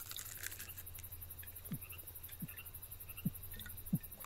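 A man gulping from a bottle: four short, low gulps about 0.7 s apart, over a faint steady hum.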